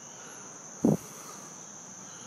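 A steady, faint, high-pitched tone holding level throughout, with one short low vocal sound about a second in.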